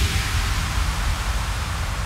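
Electronic sound effect: a steady rush of noise over a deep rumble, the tail of a cinematic impact, slowly dying away.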